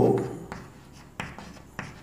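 Chalk writing on a chalkboard: faint scratching with two sharper taps in the second half.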